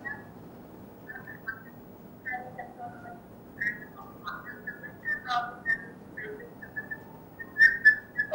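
A scattered series of short, high whistle-like chirps, some gliding in pitch, over a faint steady hiss.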